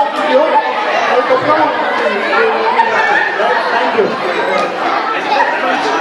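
Many voices talking at once: steady crowd chatter of party guests in a large room.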